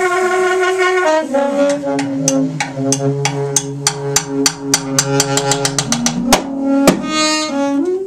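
Free jazz duo of alto saxophone and drum kit. The saxophone holds long sustained notes, stepping down to a lower note about a second in and back up near the end. The drums are played with sticks in quick strikes that speed up through the middle and end with two loud hits around the sixth and seventh seconds.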